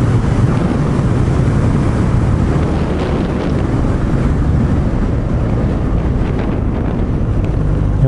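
Wind rushing over the microphone of a riding Kawasaki Z900RS at cruising speed, with the bike's inline-four engine running steadily underneath.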